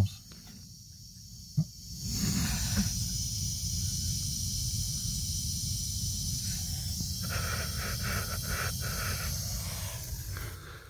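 Steady hiss of water passing through a sprinkler control valve that should be shut. It starts about two seconds in, with a knock before it and a run of light clicks near the end. The valve is leaking through, so water flows constantly.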